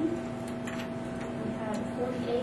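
Steady electrical hum with a few light, irregular clicks.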